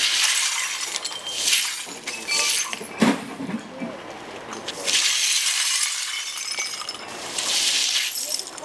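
A broom sweeping broken glass beer bottles across wet asphalt: repeated strokes of scraping, clinking glass, with a sharp knock about three seconds in.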